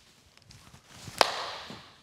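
Wooden baseball bat swung into a soft-tossed baseball: a rising swish, then one sharp crack of bat on ball about a second in, with a short ringing tail.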